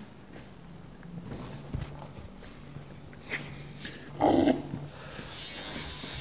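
A quiet room with a faint low hum. About four seconds in comes one short, louder sound. About a second later a tattoo machine starts buzzing steadily and keeps going.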